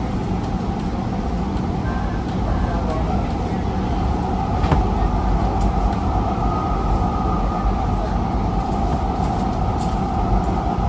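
AnsaldoBreda P2550 light rail car running at speed, heard from inside the operator's cab: a steady rumble of wheels on rail with a steady whine, joined by a higher tone from about six seconds in. A single sharp click a little before the middle.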